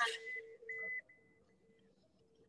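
Morse code tones: long steady electronic beeps keyed on and off, dropping much quieter about halfway through and stopping near the end.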